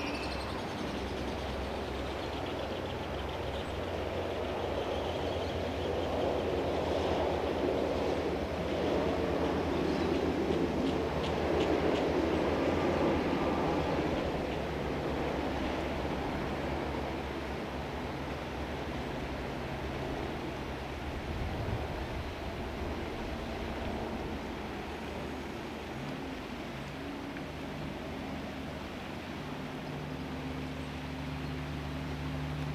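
Red semi-truck (tractor-trailer) passing on a road, its diesel engine and tyres swelling to a peak about halfway through and then fading away over a low steady hum.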